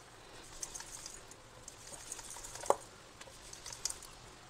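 Wooden rolling pin rolling floured chapati dough on a marble rolling board: faint rubbing with light ticks, and one sharper knock about two-thirds through.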